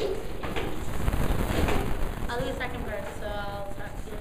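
A loud, even rushing noise close to the microphone for about the first two seconds, then a woman's voice singing a few short, held notes without clear words.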